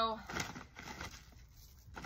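A bag of granular fertilizer crinkling and rustling in short bursts as a gloved hand reaches in for handfuls to sprinkle.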